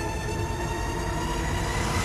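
Dramatic film-trailer score: a dense, dissonant swell of many held tones, slowly rising in pitch, with a low rumble and a hiss that grow louder as it builds.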